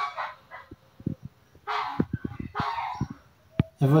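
Great kiskadee giving two short, harsh calls, the first about two seconds in and the second just under a second later, with a few soft taps around them.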